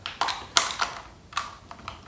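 Several short, irregular clicks and rattles of small plastic makeup containers (a compact, a lip tint tube, a pencil and a mascara) knocking together in the hands.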